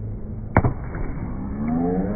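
A single sharp crack about half a second in as a flying kick strikes a breaking board held out by a partner. Voices rise near the end.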